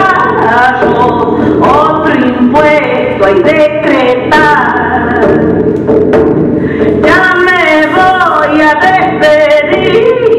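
Music with singing: sung voices hold and bend notes without a break.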